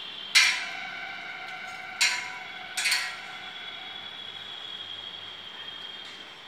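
Metal-on-metal clanks on a steel lattice telecom tower as the climber's hooks and gear strike the steel members: one about a third of a second in, one at two seconds and two close together near three seconds, each ringing on for about a second.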